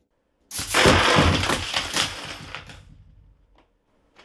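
A LEGO tower of spring-loaded shooters breaking apart when a five-pound dumbbell is dropped on its triggers: a sudden crash about half a second in, then a long clatter of plastic bricks and launched pieces hitting the wooden floor, which dies away over about two seconds. One last small click comes near the end.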